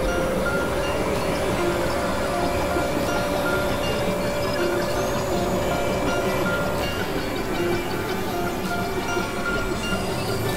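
Experimental electronic drone and noise music from synthesizers: a dense, noisy wash with a steady mid-pitched drone and short held tones at shifting pitches.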